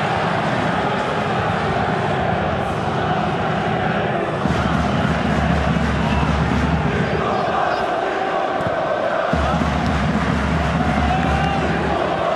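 Football stadium crowd chanting and singing steadily, a dense mass of voices, with a low rumble underneath that grows stronger about four and a half seconds in.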